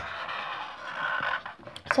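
A felt-tip pen scratching across paper in drawing strokes, fading out about a second and a half in.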